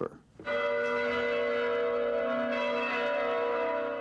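A church bell ringing: it comes in suddenly about half a second in, then holds a steady, full ringing tone.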